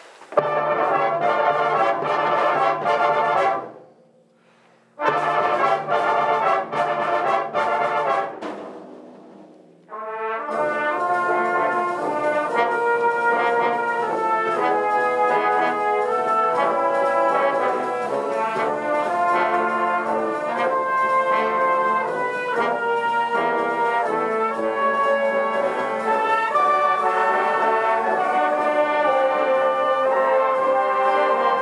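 Brass band of cornets, euphoniums and tubas playing: a loud opening phrase of about three seconds breaks off into a short silence, a second loud phrase fades away, and from about ten seconds in the band plays on continuously.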